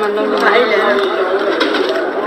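People talking at close range, a voice repeating the same short word over and over.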